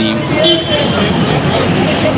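Steady road traffic noise from passing vehicles on a busy street, with no single vehicle standing out.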